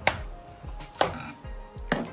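A spatula knocking and scraping in a frying pan of thick minced-meat curry during stirring, a few sharp knocks spread across the two seconds.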